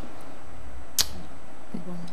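Steady studio room tone with a single short, sharp click about a second in.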